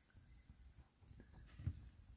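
Near silence: room tone, with one short, faint low sound a little before the end.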